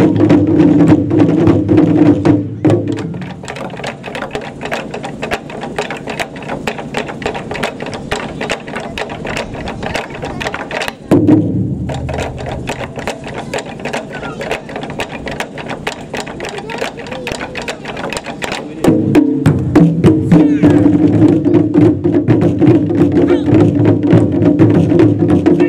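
Japanese taiko ensemble drumming on nagado-daiko barrel drums: loud full-group playing for the first few seconds, then a quieter passage of rapid, sharp strokes with one heavy accent about eleven seconds in. The full ensemble comes back loud at about nineteen seconds.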